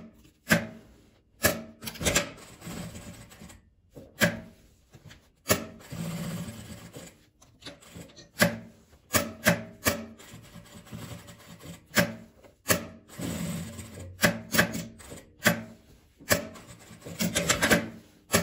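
Quilted fabric rubbing and sliding on the sewing machine table, with irregular clicks and knocks from handling. There are short stretches of steady stitching on an industrial straight-stitch machine as a patch label is sewn on.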